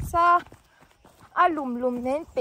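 A woman's high-pitched voice speaking in two short phrases, with a pause of about a second between them.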